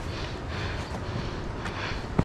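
Steady low rumble of wind on a forehead-mounted GoPro's microphone, with a hiker's heavy breathing and footsteps on a rocky trail; a couple of sharp taps near the end.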